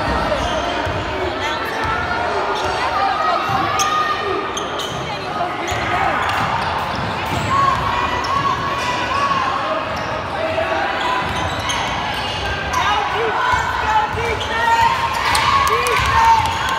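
Basketball game in a gym: a ball bouncing on the court and short, high sneaker squeaks, more frequent in the second half, over steady crowd chatter.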